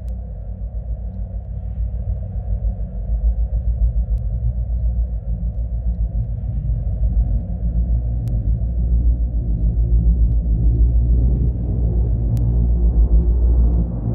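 Dark electronic music in a low, rumbling bass passage, almost all deep synth bass with little on top, slowly swelling in loudness.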